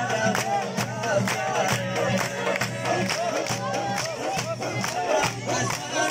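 Live Khowar folk music with a steady, fast drum beat of about three strokes a second, and voices from the crowd of dancers and onlookers over it.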